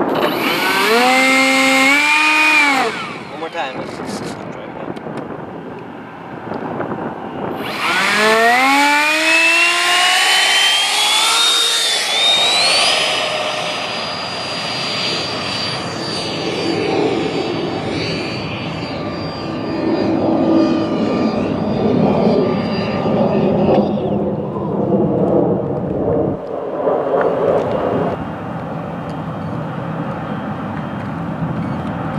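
80mm electric ducted fan of an RC F-86 jet: a short throttle burst that whines up and cuts off after a few seconds. About five seconds later the fan spools up again in a steeply rising whine to full power and holds a high steady whine for about eleven seconds before it stops.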